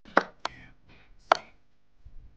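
Online chess board's wooden piece-move click sounds: a loud click just after the start as the opponent's move lands, and another about a second later as the reply move is played, with a couple of lighter clicks between.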